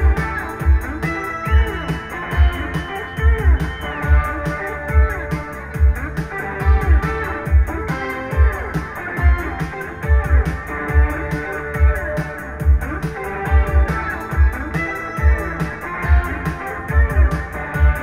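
Live band music: electric guitar playing over a steady beat with regular high ticks, with no singing.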